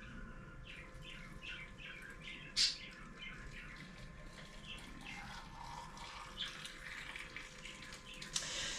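Water poured from a kettle in a thin stream into a glass jar packed with tomatoes, a quiet trickle and gurgle: the jars are being filled for marinating. There is a single sharp clink about two and a half seconds in.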